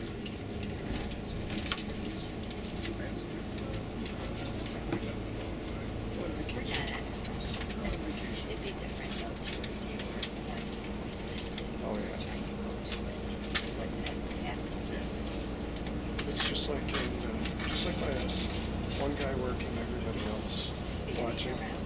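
Steady low engine and road rumble inside a moving tour coach's cabin, with scattered small clicks and rattles.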